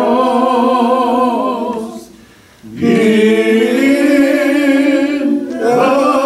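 A man singing a slow hymn unaccompanied, holding long notes with a slight vibrato. He pauses for breath about two seconds in, then comes back in on a note that rises and is held.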